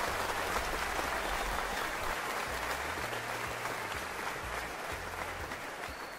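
Applause from a crowd, fading gradually, with a low rumble underneath.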